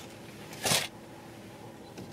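A single brief, soft noise, like a rustle or breath, about three-quarters of a second in, over quiet room tone in a vehicle cab.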